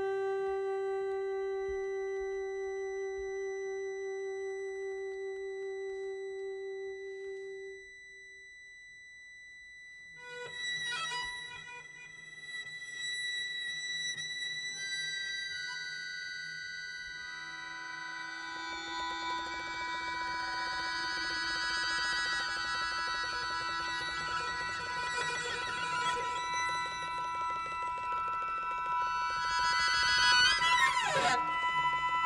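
Contemporary chamber music for alto saxophone, cello, accordion and electronics. A long held tone fades out about eight seconds in, and after a short lull new sustained tones enter and thicken into a dense, layered chord of held pitches toward the end.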